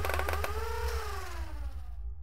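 Logo sting for the channel's outro card: a stuttering, pitched sound over a low rumble that then slides down in pitch and fades out.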